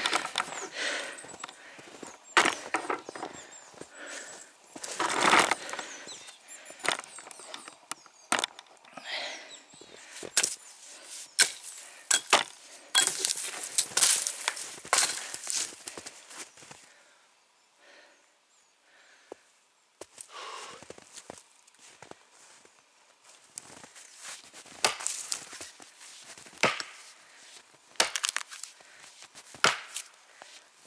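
A heavy forged felling axe, the Maral 2 (1850 g head, 75 cm handle), chopping into the base of a standing tree trunk from its second side to fell it. A run of sharp blows at irregular spacing, with a pause of a few seconds past the middle.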